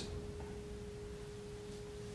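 A faint, steady pure tone that starts abruptly and holds one pitch throughout, over quiet room tone.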